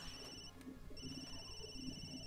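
Faint electronic mobile phone ringtone: a steady high tone that breaks off about half a second in and sounds again from about a second in.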